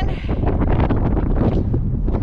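Strong desert wind buffeting the camera's microphone: a loud, low, steady rumble with no let-up.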